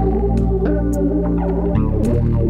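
Fretless Fender Jazz Bass played fingerstyle, a melodic line of plucked notes over a sustained backing track.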